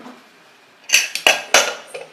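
Stainless-steel pressure cooker and its lid clattering as they are handled: a quick run of five or six sharp metallic clinks, each with a short ring, starting about a second in.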